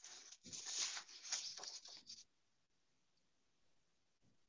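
Chinese calligraphy brush dragging across paper as strokes are written, a faint scratchy swish for about two seconds that then stops.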